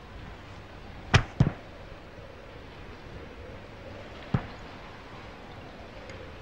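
Three sharp, short hits from a film soundtrack, two in quick succession about a second in and a single one near the end, over a faint steady hiss.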